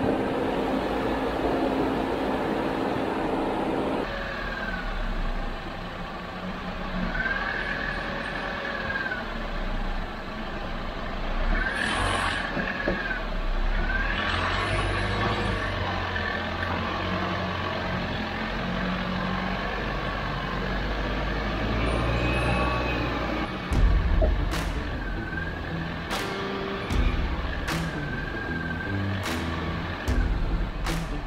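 Jeep Wrangler JL driving slowly over a rough dirt and slickrock trail: a low engine rumble that rises and falls, with a few short squeaks and several sharp knocks near the end as the tyres go over rock.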